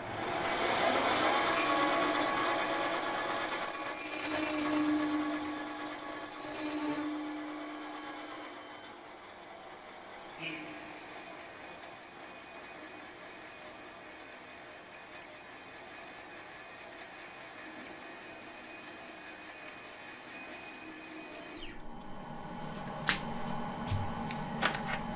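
Lathe parting tool cutting into a spinning piston blank and squealing with a high, steady whine in two long spells, with a pause of a few seconds between them. The tool is held too far out of its holder, and that overhang lets it chatter and squeal.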